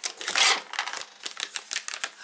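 Close handling noise: a quick run of small clicks and rattles with a louder rustle about half a second in, as things on the table are picked up and moved.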